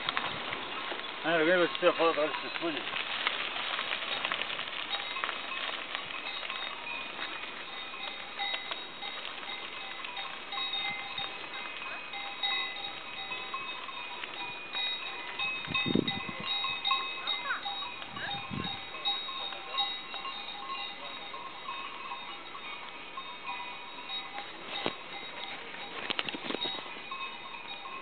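Cowbells on grazing livestock ringing on and off throughout, several bells with overlapping tones.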